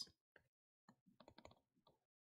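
Very faint, irregular ticks and taps of a stylus on a tablet or touchscreen during handwriting, mostly clustered in the second half.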